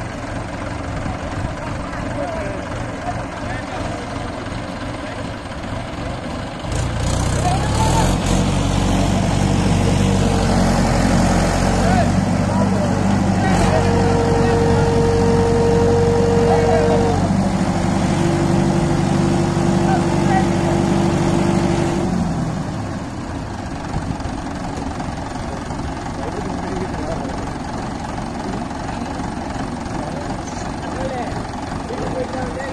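Diesel tractor engine idling, then revving up hard about seven seconds in and running loaded for about fifteen seconds, as when straining to tow a tractor out of mud, before dropping back to idle. Voices call out in the background.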